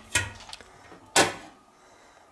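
Two knocks of a stainless steel mesh strainer against a steel pot as it is set down into the curd: a faint one at the start and a louder one about a second in that rings briefly.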